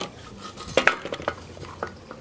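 A few light clicks and knocks of hand tools and the metal-and-plastic recoil starter housing being handled, scattered irregularly.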